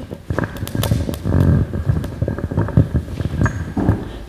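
Handling noise from a handheld microphone being passed from one person to another: a string of irregular knocks and bumps with rubbing on the mic body, loudest in the middle.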